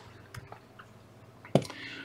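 Fly-tying scissors snipping off a dubbing loop at the vise: a few faint clicks, then one sharp snip about one and a half seconds in.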